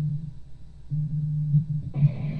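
A steady low hum in the audio feed, dropping out briefly about half a second in and then returning, over a faint hiss.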